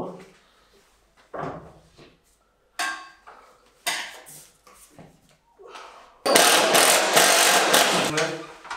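A few short knocks and clatters from handling metal ducting. Then, about six seconds in, a drill starts boring into the ceiling with a loud, steady noise that runs on to the end.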